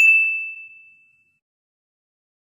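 Electronic ding sound effect: a single high chime that starts sharply and fades out within about a second.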